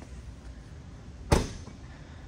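A single sharp clunk from a motorhome's exterior storage compartment door being opened, about a second and a half in, over a low steady background rumble.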